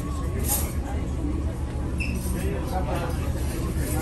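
Steady low rumble of a cruise ship's dining room at sea, under faint background voices. A light metallic clink of a pizza server on a steel tray comes about half a second in.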